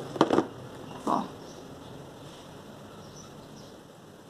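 A bus passing outside, heard from indoors as a steady noise that slowly fades away. Two short, sharp clicks come just after the start.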